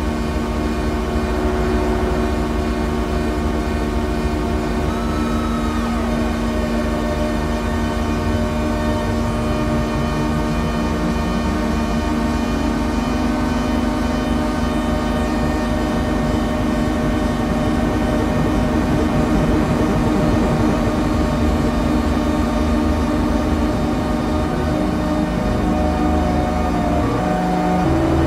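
Pocket Drone, a 12-oscillator drone synthesizer, holding a dense drone of several steady tones through lo-fi delay pedals. From about eight to twelve seconds in, one of the low tones slides upward as a knob is turned.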